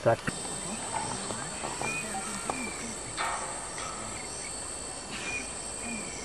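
Steady high-pitched insect drone in the background, with a few faint short chirps about two seconds and five seconds in.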